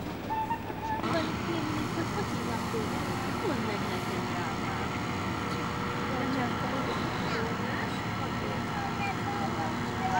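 A boat engine running steadily, starting abruptly about a second in, with faint voices over it.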